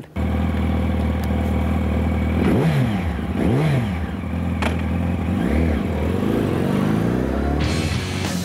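Ducati motorcycle engine idling with a steady low beat, its throttle blipped so the revs rise and fall twice in quick succession about a third of the way in, then a couple of smaller blips later.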